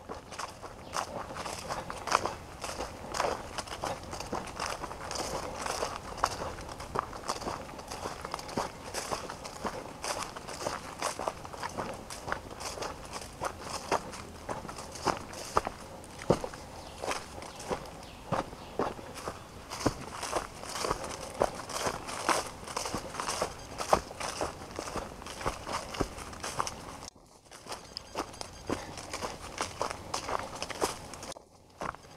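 Footsteps of a person walking at a steady pace on a dirt trail overgrown with leafy plants, with scuffs and rustling at each step. The steps stop briefly a few seconds before the end, then resume.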